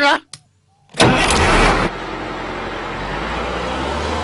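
A bus engine starts with a sudden loud burst about a second in, then runs steadily with a low hum.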